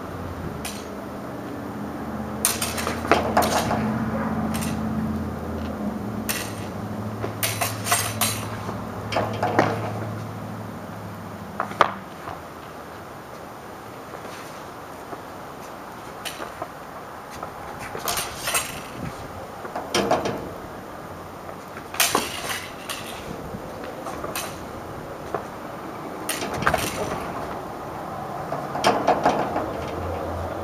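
Steel sparring rapier blades clashing and scraping against each other in quick clusters of sharp metallic clinks, with pauses between exchanges.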